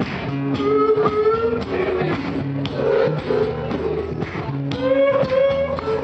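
Acoustic guitar strummed in a steady rhythm, with a man's wordless singing gliding in pitch over it.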